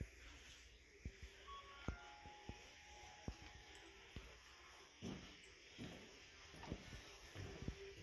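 Near silence: faint room tone with scattered soft clicks and, in the second half, dull thumps from footsteps and handling of a handheld camera while walking across a wooden floor.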